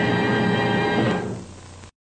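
Closing theme music of a TV series holding a sustained chord, fading about a second in and then cutting off abruptly just before the end.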